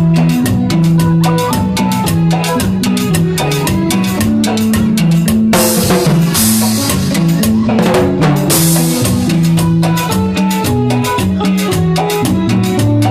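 Live band playing an instrumental passage, with electronic keyboard and bass guitar over a drum kit keeping a steady beat. Two cymbal crashes come about six and eight and a half seconds in.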